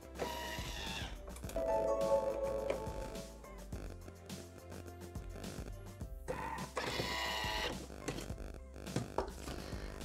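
Soft background music, with no other distinct sound standing out.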